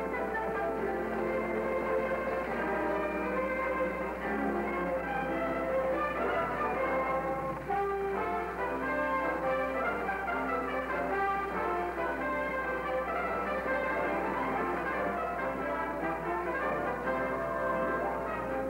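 Orchestral film score with brass prominent, playing continuously, over a steady low hum.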